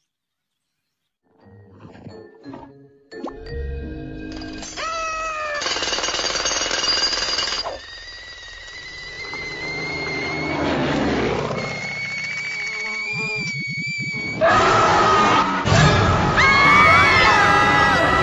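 Cartoon soundtrack montage: music and sound effects with gliding tones, starting after about a second of silence. About three-quarters of the way through it turns much louder, with screaming that bends up and down in pitch.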